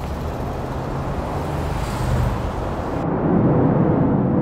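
Mazda RX-8's rotary engine running at low revs, a steady low rumble. About three seconds in the sound turns suddenly duller and a little louder.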